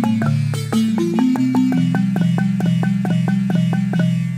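A Lobi gyil, a wooden xylophone with gourd resonators, played with two mallets in a fast, even run of notes, about five strikes a second. Deep bass bars carry most of the sound, with higher notes struck between them.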